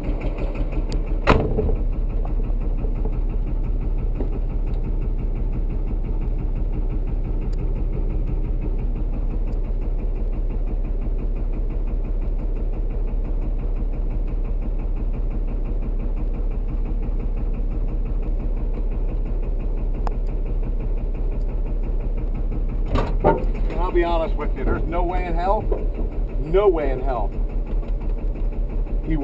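LMTV truck's diesel engine running steadily, heard from inside the cab, with a single sharp knock about a second in.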